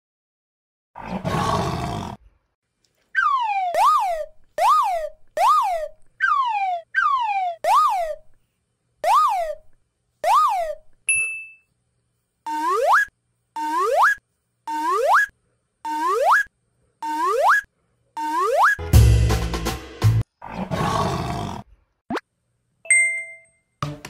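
Cartoon-style 'boing' sound effects added in editing, each a quick swoop in pitch with dead silence between. First comes a run of about eight that dip and spring back up, then a run of about seven that slide upward. A short noisy burst comes about a second in, and a louder one near the end.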